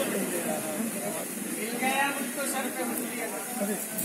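Indistinct men's voices talking at a low level, with a steady high hiss behind them.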